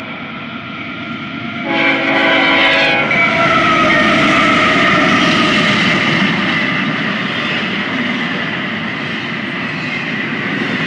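CSX Tier 4 diesel freight locomotives pass close by: a short horn chord about two seconds in, then the lead units go by with a tone that falls in pitch as they pass. Double-stack container cars follow, rumbling and clattering on the rails.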